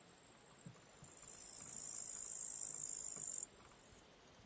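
An insect chirring: a very high, hissing buzz that starts about a second in, swells, holds, and stops abruptly before the end. Under it is a faint, steady high whine.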